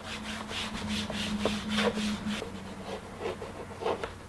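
A cloth towel rubbing back and forth across a chalkboard in quick, even strokes, wiping it clean. Near the end come a few short scratches of chalk writing on the board.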